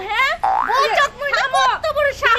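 Women's voices shouting and quarrelling in a scuffle, with a short cartoon-style rising 'boing' sound effect about half a second in.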